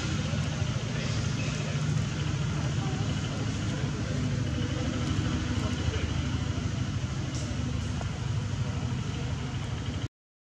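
Steady low engine-like rumble, with faint voices over it.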